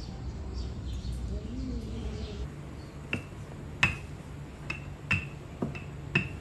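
Kitchen utensils tapping on the worktop during food preparation: about seven sharp, irregular taps, each with a brief ringing tone, starting about three seconds in, over a low steady hum.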